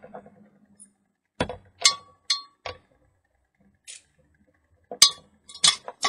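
Glass fluorescent lamp tubes clinking and knocking as they are handled and laid down: four sharp knocks in the first half, then three more near the end, some with a short glassy ring.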